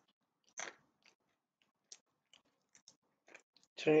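Pistachio shell being cracked and pried at by hand and teeth: one louder crack about half a second in, then a few faint clicks from a shell that will not split open.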